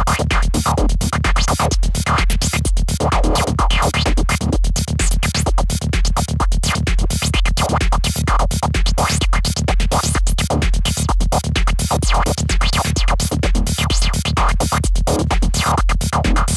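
Dark progressive psytrance loop at 128 BPM playing back: a steady kick about twice a second under a dense, stuttering noise lead run through an exciter.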